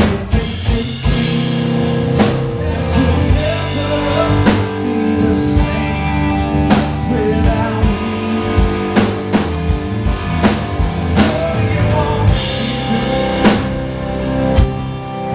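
Live blues band playing with electric bass, guitars and drum kit, the drums keeping a steady beat.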